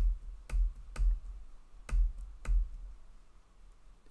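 About five separate key presses on a computer keyboard, each a sharp click with a low thump, spaced about half a second to a second apart, as the moves of a chess game are stepped through. They stop in the last second and a half.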